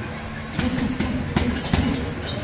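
Boxing gloves punching a hanging heavy bag: a quick run of about five punches, starting about half a second in.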